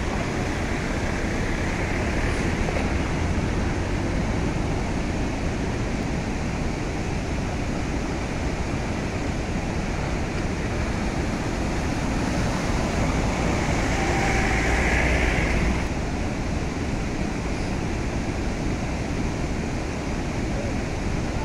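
Muddy floodwater rushing steadily across a road and cascading over its edge, with a slight swell in loudness about three-quarters of the way through.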